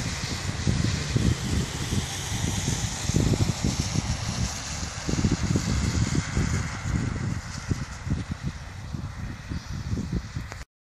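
Wind buffeting the microphone in uneven gusts, a low rumble over a steady hiss.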